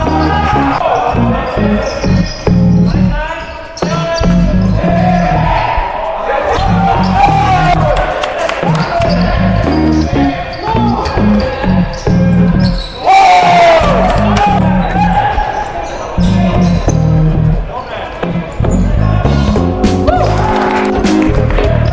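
Background music with a heavy, rhythmic bass beat and a voice-like melodic line over it.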